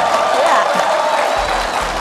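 Studio audience applauding and cheering, with music playing along.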